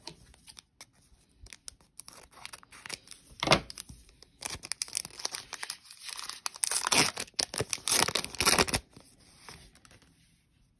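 Foil wrapper of a Panini NBA Hoops Premium Stock trading-card pack crinkling in the hands and being torn open, with a sharp rip about three and a half seconds in and a longer stretch of tearing from about six and a half to nine seconds.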